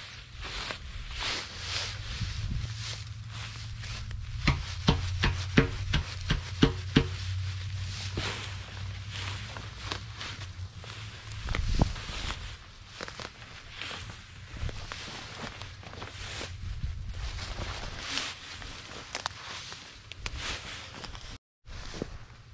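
Dry, overgrown grass rustling and crackling as it is trampled and pushed aside on foot, with a run of sharp snaps a few seconds in and a dull thump near the middle. A low hum runs under the first half.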